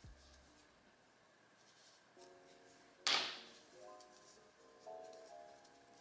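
Soft background music with a few held notes, mostly very quiet, and one short rustle of handling about three seconds in.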